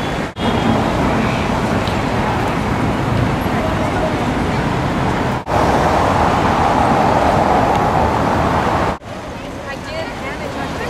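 Busy city street traffic noise, steady and loud, in three short stretches that break off suddenly about half a second, five and a half and nine seconds in.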